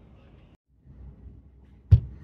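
Faint room tone that drops out briefly about a quarter of the way in, then a single short, sharp thump near the end.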